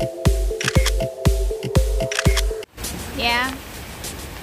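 Electronic dance music with a heavy kick drum about twice a second, cutting off abruptly about two-thirds of the way through. It gives way to the steady rush of a stone-wall water cascade, with one short gliding voice-like call near the end.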